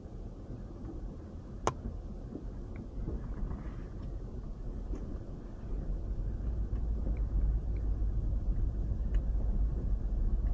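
Road and tyre rumble inside the cabin of a Toyota Landcruiser 200 series being towed in neutral, growing louder as it gathers speed. A single sharp click comes about a second and a half in.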